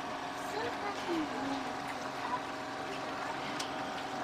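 Faint, indistinct chatter of a gathered crowd over a low steady hum, with no voice standing out.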